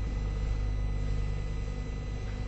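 Steady low electrical hum with faint background hiss from an old analogue broadcast recording, with no voice.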